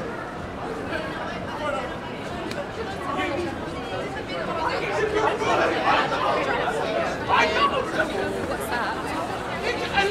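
Chatter of many passersby talking at once on a busy street, with no single voice standing out. It grows louder about halfway through.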